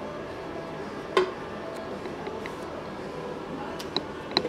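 Quiet bench-work handling noise: a single sharp knock about a second in and a few light clicks near the end, from a plastic chainsaw fuel tank and fuel line being handled on a workbench.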